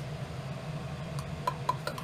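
Steady low room hum with a few faint, light clicks in the second half, as small objects are handled on a workbench.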